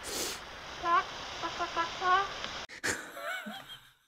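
A woman laughing in short, breathy bursts. The sound cuts off abruptly just before the end.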